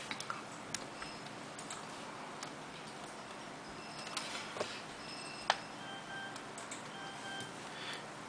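Faint clicks and taps from hands handling a tablet and pressing its buttons, the sharpest click about five and a half seconds in. A few faint, short high beeps sound in the second half.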